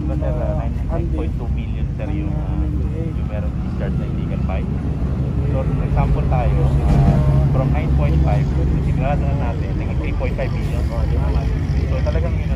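Men talking in an outdoor group over a steady low vehicle-engine rumble, which grows louder about six to nine seconds in.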